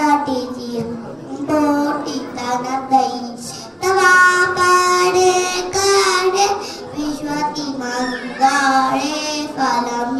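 A young girl singing solo into a microphone, her voice moving from note to note, with one long held note starting about four seconds in.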